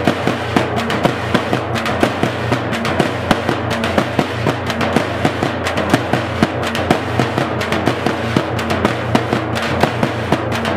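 Several large dappu frame drums beaten with sticks together in a fast, steady, loud rhythm.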